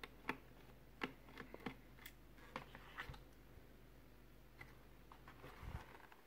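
Faint, irregular small clicks and ticks of a screwdriver working the screws of a laptop's CPU cooler, with light handling of the laptop chassis, about ten clicks in all. A soft, slightly louder thump comes near the end.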